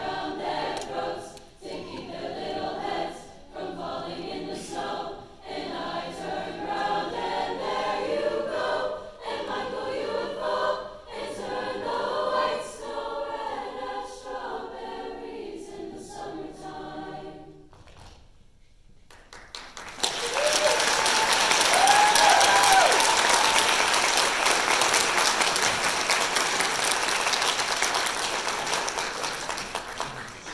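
Large mixed choir singing a song through to its final held chord, which dies away; after a brief pause the audience bursts into loud applause with a few whoops, which carries on to the end.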